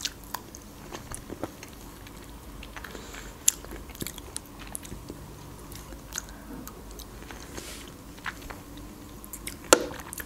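Close-miked mouth sounds of someone eating cherries: biting and chewing, with scattered soft wet clicks. The sharpest click comes about three and a half seconds in.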